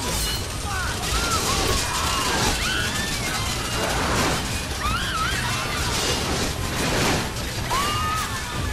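Horror film soundtrack: many people screaming in panic, short cries rising and falling one over another, over a loud, dense mix of crashing, shattering noise and music.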